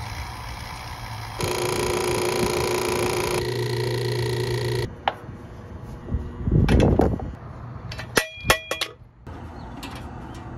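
A motor-driven machine runs with a steady hum and whine. It steps louder about a second and a half in and cuts off abruptly about five seconds in. After that come handling sounds of hoses and fittings: a short burst of noise around seven seconds in, then a quick run of sharp metallic clinks just after eight seconds.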